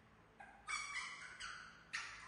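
Young monkey giving a string of high-pitched cries, starting about half a second in and coming in two or three drawn-out calls.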